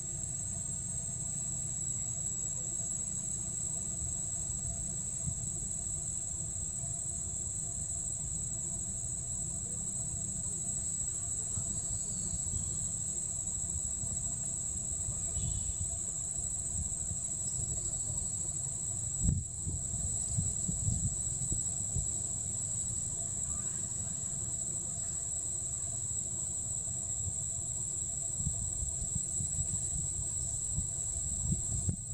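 Insects holding one steady, high-pitched drone throughout, over a low rumble, with a single thump about two-thirds of the way through.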